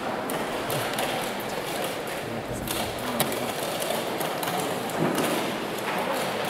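Playing-hall background of low voices with scattered sharp clicks and taps of wooden chess pieces being set down and chess clocks being pressed, one click a little past halfway louder than the rest.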